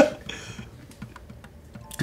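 A quiet lull with faint, scattered light clicks and taps, like small handling noises at a table.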